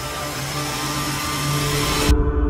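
Trailer sound-design riser: a rushing noise swell that grows steadily louder and brighter over a sustained low drone, building toward a hit.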